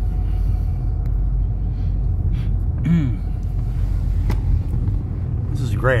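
Steady low road rumble heard inside the cabin of a car cruising slowly, tyres and engine droning together. A man clears his throat about halfway through, and a single click follows a second later.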